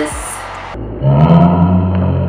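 A loud, deep, steady growl-like sound held for about a second and a half, starting about a second in after an abrupt cut in the audio.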